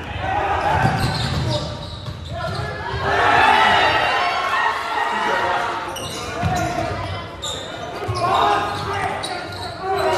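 Basketball being dribbled on a hardwood gym floor, with voices of players and spectators echoing in the hall.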